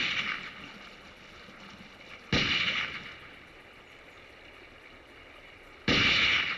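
Three gunshots, about three seconds apart, each sudden crack followed by an echoing tail that fades over about a second.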